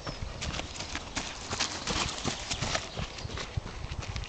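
Quick footfalls of a person running and a schnauzer trotting beside her on lead over dry, gravelly grass, a rapid patter of steps. The steps are loudest in the middle, as the pair pass close by.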